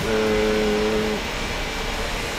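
A man's drawn-out hesitation sound, a held "eee" on one steady pitch for about a second. Then it stops, leaving only steady low background noise.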